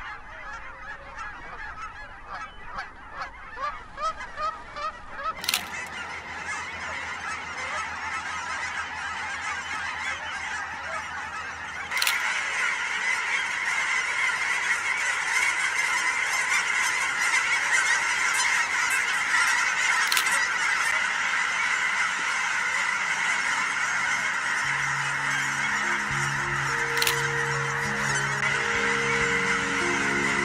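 Geese calling: a few separate honks at first, building into a dense chorus of overlapping honks from a large flock, louder from about twelve seconds in. Soft music with slow held notes comes in under the calls near the end.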